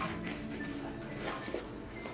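Faint handling noise from a ripstop-nylon travel duffel being lifted and its compression straps tugged, with a light tap at the start and a few soft ticks.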